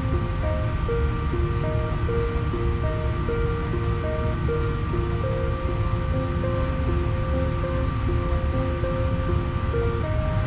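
Background music: a slow melody of held notes, over a steady low rushing noise.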